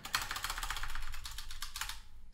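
Computer keyboard keys clicked in a quick run as text is deleted; the clicks stop just before the end.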